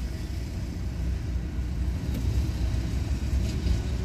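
Steady low rumble inside a stationary car's cabin, with nothing else standing out.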